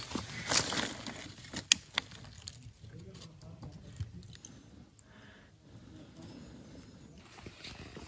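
A few sharp clicks of a disposable lighter being struck, with quiet rustling of a plastic charcoal bag, while kindling is lit in a charcoal grill.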